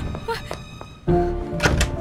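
A single heavy thunk about a second in, from a wooden door being pulled open, over dramatic film background music.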